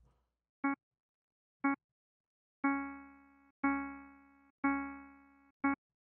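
Pilot software synthesizer, triggered by an Orca sequence, playing the same mid-range note once a second. Two short blips come first, then three longer notes that each fade out over most of a second, then another short blip.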